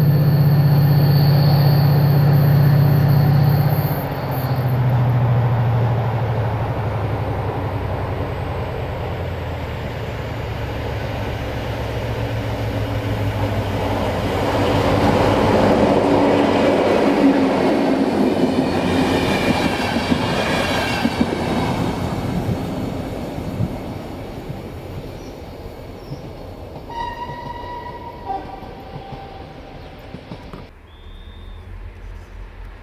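Diesel-hauled passenger train approaching and passing close by: engine and wheel noise build to their loudest a little past halfway, with the rumble and clatter of the coaches, then fade as the train draws away. A steady low engine hum sounds for the first few seconds and then changes pitch.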